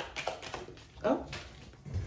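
Tarot cards being shuffled and handled by hand: a run of light, quick card clicks and flicks.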